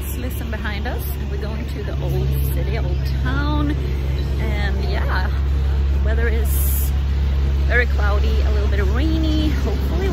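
Steady low rumble of city road traffic, with buses and trucks passing close by, getting louder about two seconds in. A person's voice talks over it.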